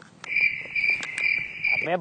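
Cricket chirping: a steady high trill that starts abruptly just after the start and cuts off just before the end, like the added cricket sound effect used for an awkward silence.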